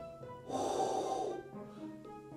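A man breathes out hard with an open mouth into a close microphone: about a second of airy, unpitched breath, like breathing on a window to fog it. It is the breathing that a death-metal growl is built on.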